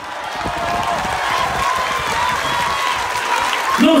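A crowd applauding steadily, swelling slightly in the first second. A man's voice comes back in at the very end.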